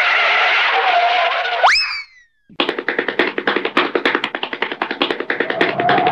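Edited-in comedy sound effects and music: a hissing rush ending in a quick upward boing-like glide a little under two seconds in, a brief silence, then fast rhythmic ticking music at about eight to ten ticks a second.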